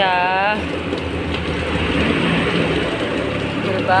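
Water running steadily from an outdoor wall tap and splashing into a plastic crate of toys being washed.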